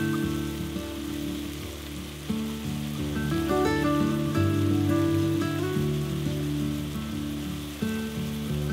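Background music with held notes over a steady crackling sizzle of beef chunks and onions frying in oil in a pot.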